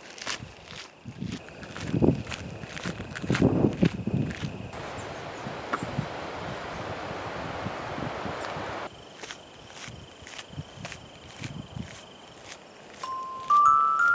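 Footsteps on a gravel path, with a faint steady high tone behind them and a few seconds of even rushing noise in the middle. Near the end a chiming jingle begins, playing a rising run of notes.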